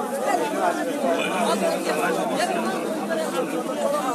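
Crowd chatter: many voices talking over one another at a busy fish market, with no single voice standing out.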